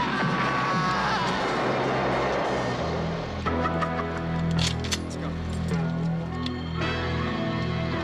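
Film soundtrack: an explosion's noisy rumble and falling debris under action music for about the first three seconds. After that the music carries on alone with steady held low notes.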